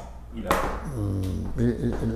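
Speech: an elderly man's voice with a held, hesitant 'euh', after a short sharp click about half a second in.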